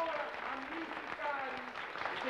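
Audience applauding, with voices heard over the clapping.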